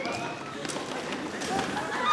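Footsteps and shuffling of several people on a wooden stage floor, a few light taps, with faint voices in a large hall.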